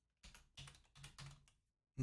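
Faint computer keyboard typing: a quick run of about half a dozen keystrokes over a second and a half.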